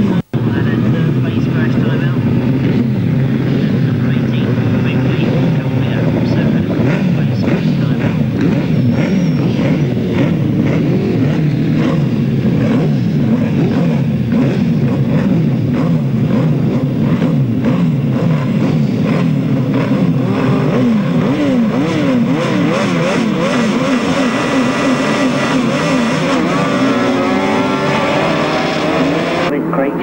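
Several grasstrack sidecar outfits' engines running together at the start line, the riders blipping and revving so the pitch swings up and down; the revving grows quicker and busier in the second half.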